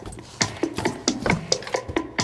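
Rhythmic clicking knocks, about four or five a second, each with a short falling thud: the strange noise coming from the closet.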